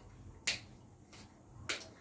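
Kitchen knife chopping green chillies on a wooden cutting board: two sharp knocks of the blade on the board, a little over a second apart, with a fainter one between them.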